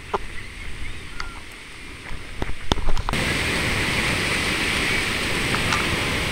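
Ocean surf washing in shallow water, with a few short clicks. About three seconds in it switches abruptly to a louder, steady rush of wind and surf.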